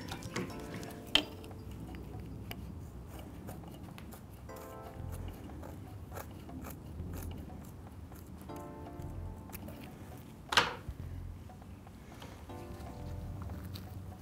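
Quiet background music in short recurring phrases, under faint handling noise and a couple of sharp snips, about a second in and louder near ten and a half seconds, as scissors cut fiberglass exhaust header wrap.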